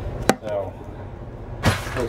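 Handling noise on a hard countertop: a sharp click about a quarter second in and a louder knock near the end, over a steady low hum.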